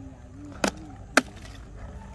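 Two sharp knocks about half a second apart, made by a stick pushed through a papery hornet nest as it is shifted and turned on the ground.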